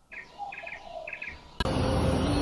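A small songbird chirping in short, rapid trills, three times in quick succession. Near the end, a much louder, steady sound cuts in abruptly.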